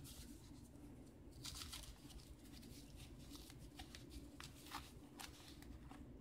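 Faint rustling and crinkling of paper wrapping being pulled open by hand, with scattered small crackles.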